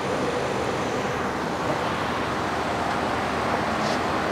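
2008 Chevy Cobalt engine idling steadily, heard as an even, unchanging running noise.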